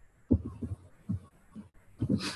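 Computer keyboard keystrokes picked up as dull, low thumps, about six at irregular spacing.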